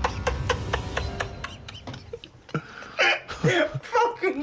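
Laughter in quick, short repeated bursts, dying away about two seconds in. A short voiced sound follows near the end.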